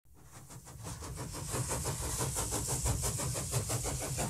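A steam engine running, a quick even beat of about seven strokes a second over a low rumble, fading in from silence.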